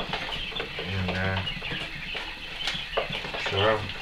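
Plastic scraper scratching and scraping soiled bedding and droppings across the floor of a plastic tub brooder, a rough crackly rustle with a couple of sharp clicks near the end.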